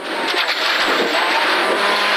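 Ford Fiesta rally car's 1.6-litre engine running hard, heard from inside the cabin together with a steady rush of gravel and tyre noise.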